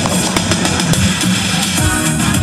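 Instrumental introduction of a song's backing track, with drums, before any singing comes in; a fuller bass line joins near the end.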